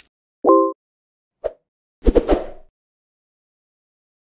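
Animated-intro sound effects: a short pitched pop about half a second in, a smaller pop near one and a half seconds, and a quick run of knocks and clicks just after two seconds.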